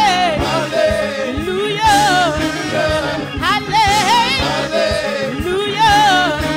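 Live gospel praise music: a woman and a man singing wordless, wavering vocal runs over a church band's chords and drumbeat.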